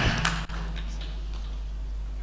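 A pause in speech: room tone with a steady low hum through the sound system, and a brief dropout about half a second in.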